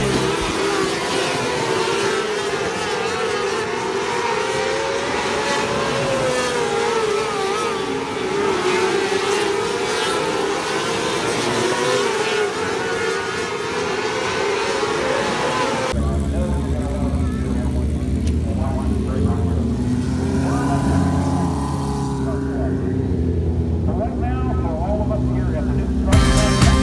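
A pack of micro sprint cars racing on a dirt oval, their engine notes wavering up and down as they lap. About two-thirds of the way through it cuts to a single micro sprint car's engine running close by, a low steady hum.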